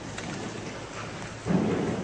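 Steady hiss and rustle of a large church interior with a few faint clicks, then a single dull thump about one and a half seconds in that dies away over half a second.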